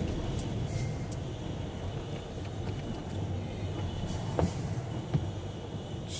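Road noise heard inside a moving car: a steady low engine and tyre rumble on a wet road, with two short light knocks in the second half.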